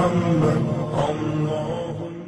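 Chanted vocal music with long held notes, slowly fading out toward the end.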